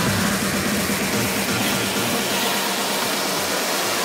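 Electronic dance track played from a DJ controller with a loud hissing noise effect laid over its beat, the bass dropping away in the second half; it cuts off suddenly at the end as the mix switches to the next song.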